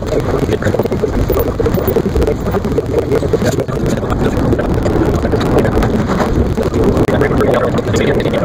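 Steady car road and engine noise while driving, heard from inside the car's cabin.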